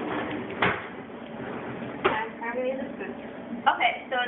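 Kitchen cutlery drawer being handled: a knock about half a second in and a sharp clack about two seconds in.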